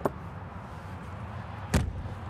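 Drop-down window on a Cimarron aluminum horse trailer being pushed shut: a faint click at the start, then one sharp metal bang as it slams closed near the end.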